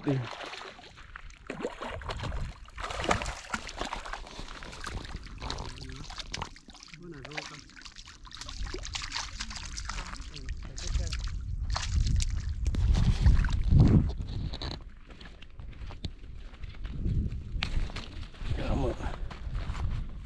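Water sloshing and splashing at a lake shoreline, with a low rumble on the microphone that swells about two-thirds of the way through.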